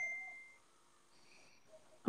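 A single high ding: a clear tone struck just before and ringing out, fading away within about half a second.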